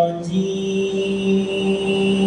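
A man reciting the Quran in a slow, melodic chant (tilawah) through a microphone. After a brief break just after the start, he holds one long, steady note.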